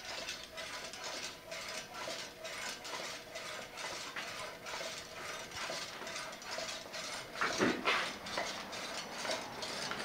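Homemade gravity wheel spinning, its metal arms and the pulley wheels riding the slides clicking and rattling in a rapid, steady rhythm.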